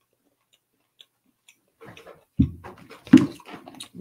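Close chewing of a crispy chocolate bar with crunchy pieces and nuts: irregular crunching that starts about two seconds in, after a near-silent start, with the loudest crunch about three seconds in.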